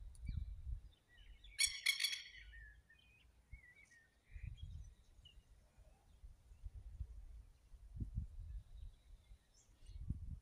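A bird calling: a short, rapid burst of bright chirping notes about two seconds in, then a few faint chirps.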